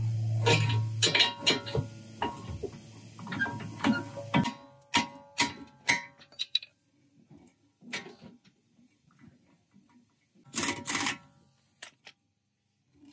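Background music with plucked guitar-like notes, over a steady low hum that stops about four seconds in. Near the end there is a short, loud, noisy burst.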